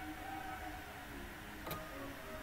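A single sharp click of a computer mouse button about two-thirds of the way in, over a faint steady electrical hum.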